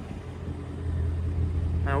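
Ford Mustang GT's 5.0-litre V8 idling with a low, steady rumble.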